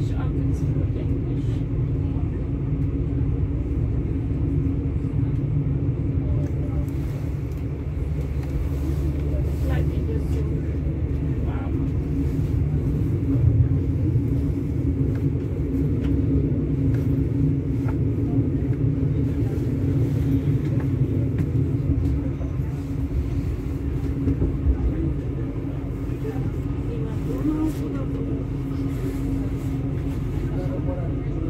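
Steady low rumble of a regional passenger train running, heard from inside the carriage, with a few faint clicks from the wheels over rail joints.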